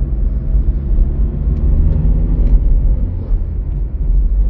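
Cabin sound of a Chevrolet Celta's small four-cylinder engine running steadily at low speed in city traffic, with a loud, continuous low rumble of road and tyre noise.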